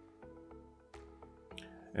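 Soft background music with held notes that change every so often, and a few faint ticks.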